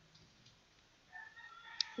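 Near silence, then about a second in a faint animal call with a few steady held tones, and a small click near the end.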